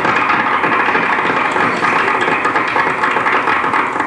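Live audience applauding, loud and steady, cutting off abruptly after about four seconds.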